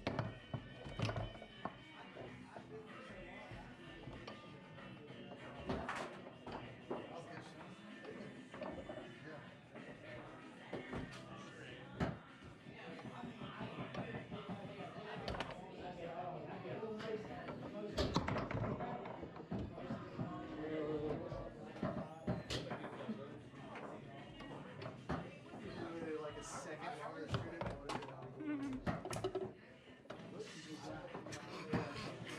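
Foosball in play: sharp knocks and clacks at irregular intervals as the ball is struck by the players' figures and hits the table walls, over a background of room chatter and music.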